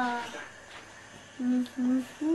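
A young child's drawn-out, falling whine trails away at the start. After a pause, two short, level hummed "mm" sounds come from a child's voice near the end.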